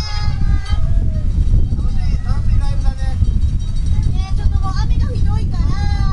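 Wind buffeting the microphone in a heavy downpour, a loud, steady low rumble, with indistinct voices talking over it.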